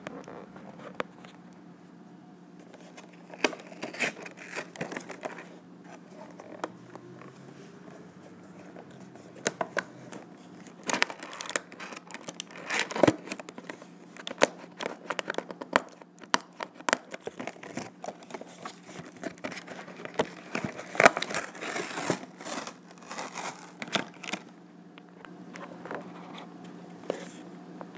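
A toy's cardboard box with a clear plastic window being pulled and torn open by hand: irregular crinkling, tearing and sharp snapping clicks in bursts.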